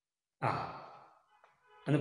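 A man's short sigh that fades away within about a second, followed near the end by the start of his speech.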